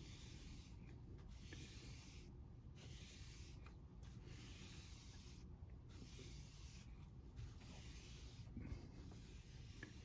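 Faint hissing strokes of a small cleaning sponge wiped over a paper comic book cover, repeated about every second with short pauses, to lift surface dirt from the cover.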